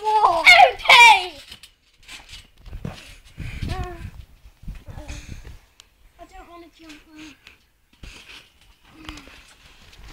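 Children's voices: a loud, high shout in the first second that falls in pitch, then quieter scattered talking with pauses.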